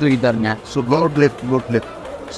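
A man's voice amplified through a handheld microphone and loudspeaker, speaking in short phrases that the recogniser could not make out.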